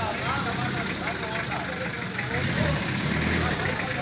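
Pickup truck's engine idling steadily, with faint voices in the background.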